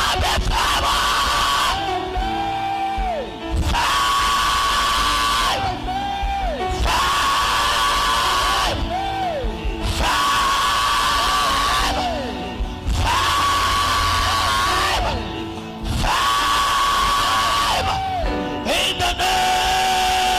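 Loud live church praise music, a short held-and-sliding melodic phrase repeating every few seconds over a steady low beat, with shouts from the worshippers.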